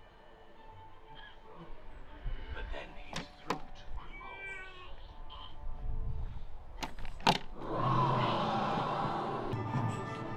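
Sharp taps on a red rubber push button in the path, twice about three seconds in and twice again about seven seconds in. A short wavering electronic sound effect follows the first taps, and a longer, louder noisy effect starts soon after the second pair, over background music.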